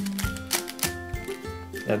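A Dayan Megaminx puzzle being turned by hand through an algorithm: a run of quick plastic clicks and clacks as its faces rotate, over background music.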